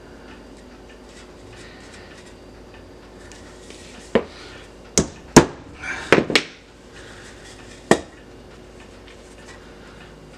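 A run of sharp wooden knocks, about seven of them between about four and eight seconds in, several in quick succession around six seconds: furniture tacks being driven into the end grain of a burlap-wrapped cedar board.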